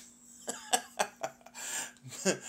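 A man's short breathy bursts from the throat: four quick puffs about a quarter second apart, then a longer exhale near the end.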